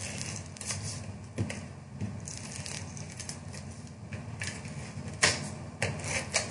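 Adhesive tape runner drawn in strokes along the back of a cardstock mat, giving light rasping runs and small clicks, with a couple of sharper clicks near the end. Stiff cardstock rustles as it is handled.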